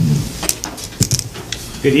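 A few sharp clicks and light knocks of small objects being handled, about half a second apart, over a low room hum. A man starts speaking near the end.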